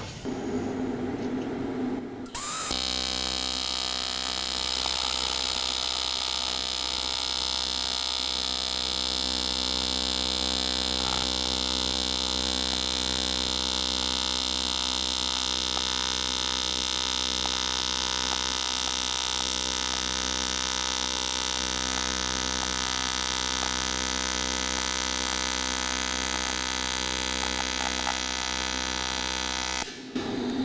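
AC TIG welding arc on an aluminum plate: the arc strikes about two and a half seconds in and buzzes steadily at an even pitch and level, stopping at the end.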